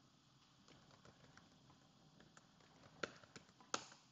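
Faint computer keyboard typing over near-silent room tone: a few scattered keystrokes, the clearest ones about three seconds in and just before the end, as a login name is typed and entered.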